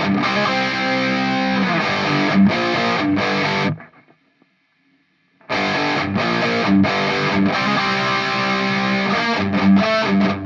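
Electric guitar distorted through a Revv G3 pedal into a Nux Solid Studio power amp and cabinet simulator, playing a heavy riff with tight, rhythmic stops. About four seconds in it cuts off for about a second and a half, then the riff comes back in.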